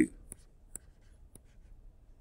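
A stylus tapping and scratching faintly on a tablet screen while handwriting, with a few soft clicks as the pen touches down.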